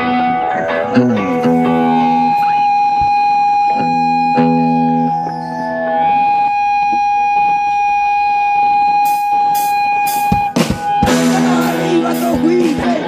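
Live punk rock band's intro: electric guitars hold ringing chords and one long steady high note, then a few sharp drum hits lead into the full band starting about eleven seconds in.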